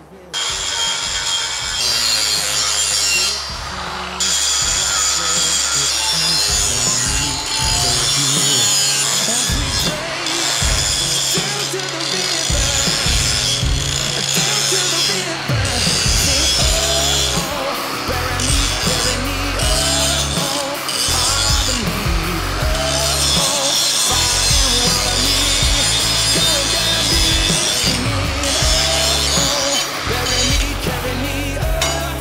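Angle grinder grinding the slag off torch-cut steel plate edges, a steady high-pitched grinding, with rock music playing over it.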